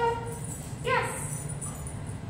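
A woman's voice: one short, high-pitched word about a second in, in the bright tone of a trainer's marker or praise to a dog.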